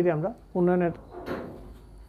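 A man's voice speaking a couple of short words, followed about a second in by a brief burst of noise, like a short scrape or rustle.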